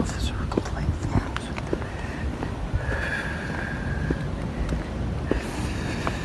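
Footsteps on pavement while walking with a handheld phone, with wind rumbling on the microphone. A brief high steady tone sounds about three seconds in.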